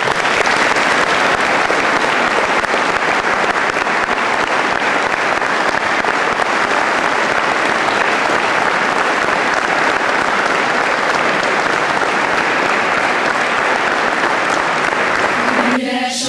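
Audience applauding: dense, steady clapping from many hands that starts sharply and holds at an even level without a break.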